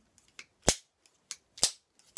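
A pair of scissors snipping shut several times: sharp clicks of the blades closing, two loud ones about a second apart with lighter ones between.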